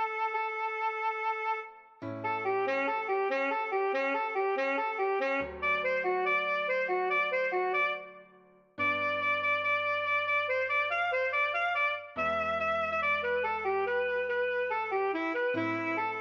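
Alto saxophone playing a fast melody of quick repeated notes in phrases, broken by short pauses every few seconds. Under it, a backing track holds sustained low bass notes.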